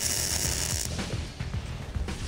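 Electric welder crackling for about a second as it re-welds the broken spot welds on a steel seat frame, then stops. Background music runs underneath.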